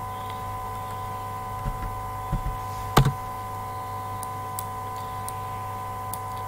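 A computer mouse clicking: one sharp click about halfway through and a few fainter clicks, over a steady electrical hum.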